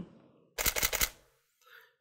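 DSLR shutter and mirror firing a rapid burst of three frames, a quick run of mechanical clicks lasting under a second, then stopping. This is automatic exposure bracketing in continuous mode: three exposures at the set exposure, one stop darker and one stop brighter.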